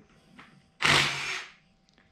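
A short whirring burst from a power tool, lasting under a second, about a second in.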